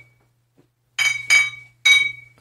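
Glass clinking: three sharp, ringing strikes about a second in, each ringing out at the same high pitch.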